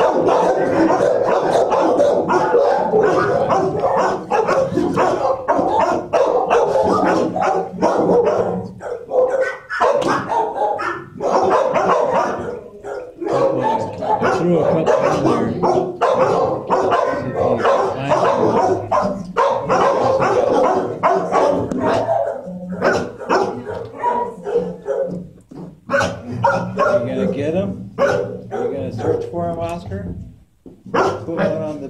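Many dogs barking in shelter kennels: a loud, dense chorus of overlapping barks that carries on throughout, easing off briefly a couple of times.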